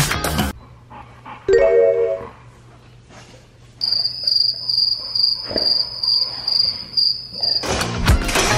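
Cricket chirping, a high pulsing trill about three chirps a second, over a low steady hum, after a short pitched tone about a second and a half in.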